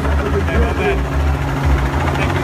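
A loud low rumble, uneven and pulsing, with voices talking briefly in the first second.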